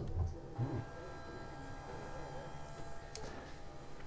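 Motorised pop-up TV lift in a cabinet running, a faint steady electric-motor whine as it raises the television.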